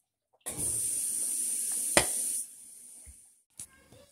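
Dishwasher running, its water spray making a steady hiss for about two seconds, with a sharp click near the end, then dropping to a fainter hiss.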